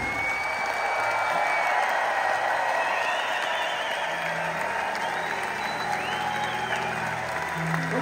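Concert audience applauding after the final chord of a rock song, with long high whistles from the crowd. From about halfway through, a low steady note sounds from the stage under the applause.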